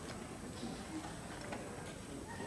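Quiet hall room tone during a pause in a speech, with a few faint clicks about every half second.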